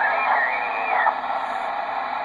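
Ranger RG-99 radio's receiver playing steady static through its speaker, with a faint, garbled voice from a weak station sliding in pitch in the first second.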